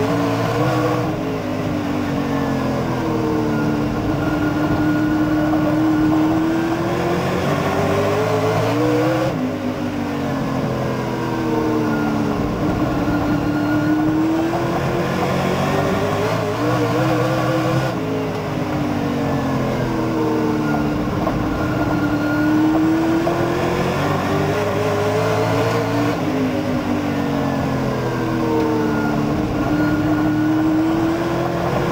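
Dirt super late model race car's V8 engine heard from inside the cockpit. It is driven hard around the oval, its pitch dropping and climbing again about every eight or nine seconds as it goes off and back on the throttle through the turns.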